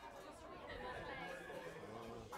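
Faint, indistinct voices chattering, without clear words.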